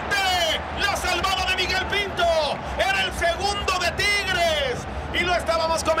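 A male football commentator speaking excitedly in Spanish, his voice rising and falling in quick phrases.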